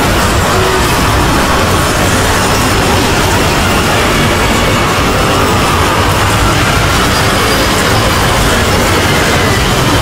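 Many cartoon soundtracks playing over one another at once, their music and sound effects blended into a dense, loud, steady jumble with no single sound standing out.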